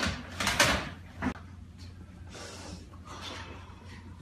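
Thumps and scuffling of a man and a small boy play-fighting, with a cluster of knocks in the first second and another short thump just after, then quieter rustling.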